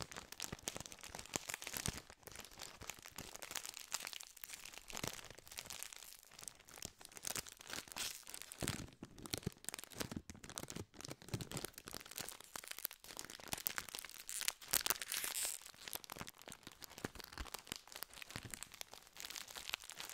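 Plastic wrapper of a Prinzen Rolle biscuit pack crinkled and squeezed in the hands close to the microphone, making a dense, unbroken run of sharp crackles.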